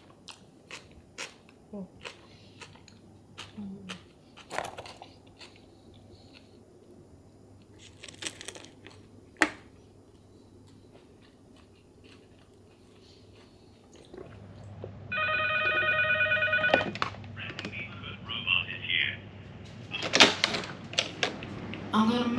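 Close-up eating sounds: small crunches and chewing, with scattered clicks of a plastic fork on a plastic tub, as battered fish and chips and coleslaw are eaten. About fifteen seconds in, a loud steady electronic ringing tone sounds for about two seconds, followed by a few shorter electronic sounds.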